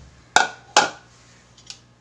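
Two sharp knocks of kitchenware striking a hard surface, about half a second apart, each ringing briefly, then a lighter click near the end.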